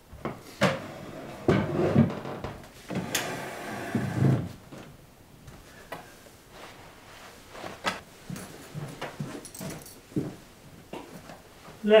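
Clothes being put on and handled: a loud stretch of fabric rustling and swishing with knocks in the first few seconds, then scattered light clicks and knocks.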